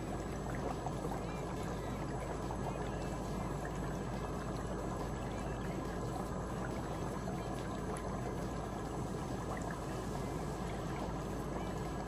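Electric foot spa running steadily: its vibration motor hums and the water bubbles and churns in the basin around the soaking feet.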